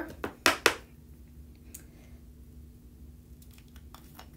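Plastic screw lid of a small Perfect Pearls pigment jar being twisted open: two short, loud scraping clicks about half a second in, then a few faint ticks.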